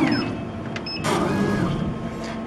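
Laser cutter's axis drive motors whining as the head is jogged in short moves, the pitch rising and falling with each move, with short control-panel key beeps. A rush of noise comes in about halfway.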